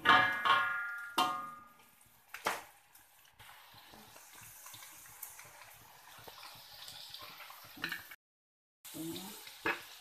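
A perforated metal skimmer knocks against a steel wok four times in the first couple of seconds, the first strikes ringing, then grated ginger sizzles steadily in hot oil as it fries toward crisp for serunding. The sound drops out for a moment near the end.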